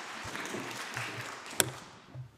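Scattered applause from the parliamentary benches dying away, with a single sharp tap about one and a half seconds in.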